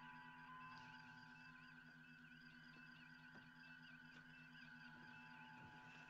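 Faint starship-bridge ambience of computer consoles: a steady electronic hum with low pulsing tones and a repeating, warbling beep pattern.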